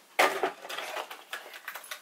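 Empty candle and wax-melt containers being handled: a sharp knock as one is set down just after the start, then light clicks and rustling of rummaging for the next one.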